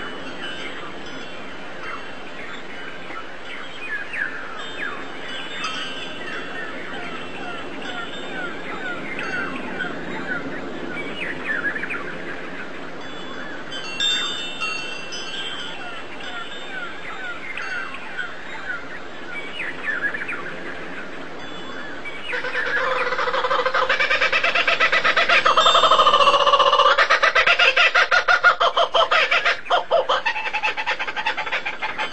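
Birds chirping: many short, quick calls overlap. About two-thirds of the way through, a louder, rapidly pulsing sound comes in and takes over.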